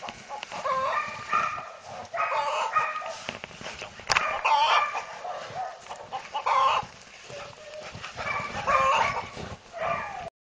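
Animal calls in about six short bouts, each a cluster of pitched cries, with quieter gaps between.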